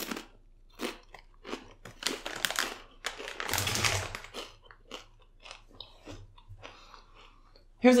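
Crunching of a Lay's potato chip being chewed close to the microphone: irregular crisp crunches, densest around three to four seconds in, then thinning to small sparse crunches.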